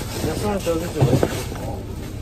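Indistinct voices talking close by, with a brief knock about a second in, like something hard set down on the table.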